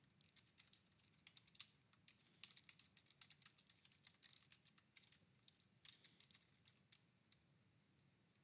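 Faint typing on a computer keyboard: a run of irregular key clicks that thins out and stops about a second before the end.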